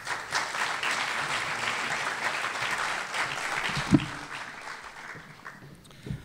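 Audience applauding, starting suddenly and fading away over the last two seconds. A single dull thump about four seconds in.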